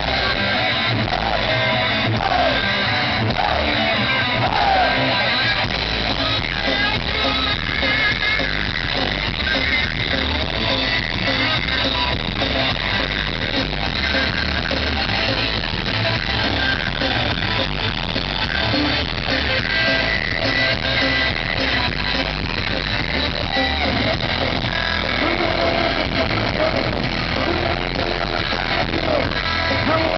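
Hard rock band playing live, electric guitars to the fore, in a rough concert recording that sounds very poor.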